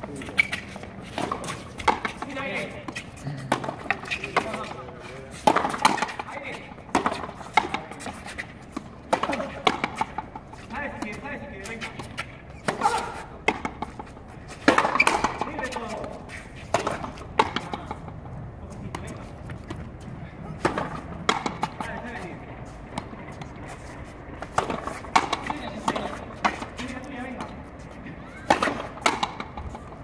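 Frontenis rally: a rubber ball struck by rackets and hitting the fronton wall, making sharp cracks at irregular intervals, with players' voices between the shots.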